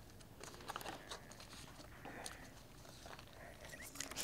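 Faint, scattered taps and rustles of hands patting soft plastic worms and a laminated mat on a table.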